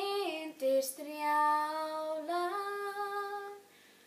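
A girl singing unaccompanied in Icelandic. She draws out a falling note, takes a quick breath about a second in, holds a long lower note, then steps up and holds it. She stops about half a second before the end.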